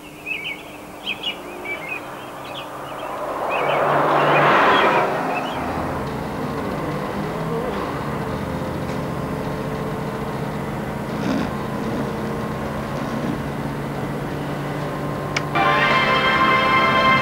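Birds chirping, then a bus passing with a rush that swells and fades about four to five seconds in, followed by the bus's steady engine drone as heard from inside the cabin. Music comes in just before the end.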